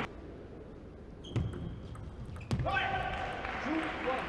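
Table tennis ball in play: two sharp clicks of the ball on bat or table about a second apart, with the ring of a large hall.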